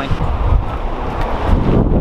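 Wind buffeting the microphone, a gusty low rumble with no clear splash or impact.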